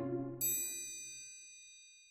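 The last note of a short music jingle dies away, and about half a second in a single bright, high chime sound effect rings and fades out slowly.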